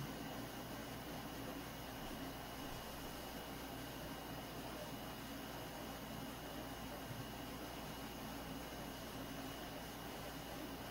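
Steady background hiss with a faint low hum and a thin high-pitched tone, unchanging throughout; no distinct button click or other event stands out.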